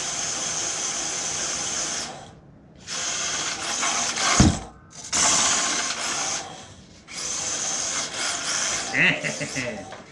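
Small electric motor and gear drivetrain of a 1/18-scale Panda Hobby Tetra RC jeep running on a three-cell (3S) battery, whining in bursts of throttle and cutting out briefly three times. A thump about four and a half seconds in.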